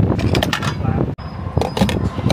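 Clicks and knocks of a fuel nozzle being handled at a gas pump, over loud gas-station forecourt noise; the sound breaks off for an instant about a second in.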